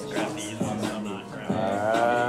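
Background music with a steady beat. About a second and a half in, a long held, slightly wavering pitched note begins and carries on.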